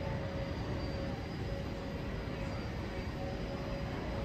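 Steady background din of a large exhibition hall: a constant low rumble with a thin, steady hum tone running through it.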